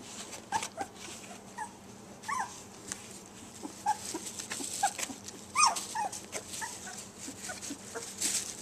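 Border collie puppies whimpering and squeaking in many short, high calls, several sliding down in pitch, the loudest about two and a half and five and a half seconds in.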